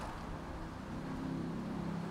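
Faint, steady low engine hum.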